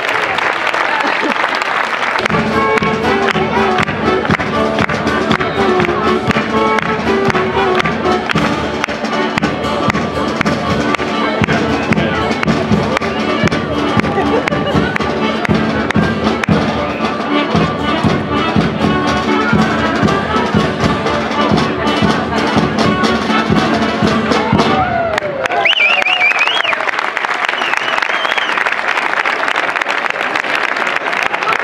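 Brass band music with a steady, regular beat. A voice is heard over the first two seconds, and the music stops about 25 seconds in, giving way to voices.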